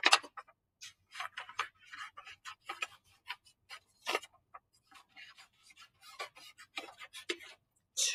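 Scissors cutting paper: a run of short, irregular snips with paper rustling between them.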